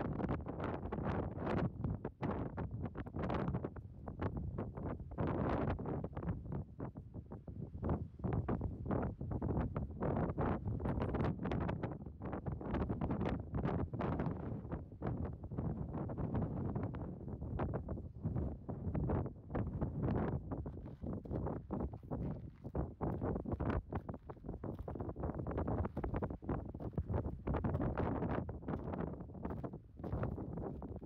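Wind buffeting the microphone: a gusty low rumble that rises and falls unevenly throughout.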